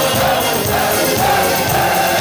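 A crowd of men singing together in one loud, continuous melody.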